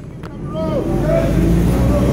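Protesters' voices talking and calling out over a low, steady rumble.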